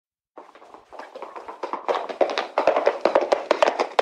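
Horse hoofbeats: a quick, irregular clatter of sharp taps that starts about a third of a second in and grows steadily louder, as if coming closer.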